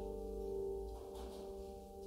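Solo piano improvisation: a held chord ringing on and slowly fading, with a faint brief rustle about a second in.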